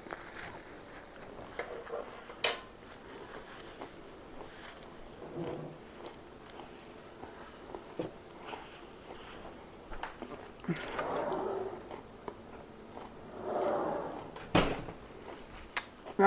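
Quiet chewing of a mouthful of raw broccoli and cauliflower salad, with a few sharp clicks of a fork against a glass salad bowl; the loudest click comes near the end.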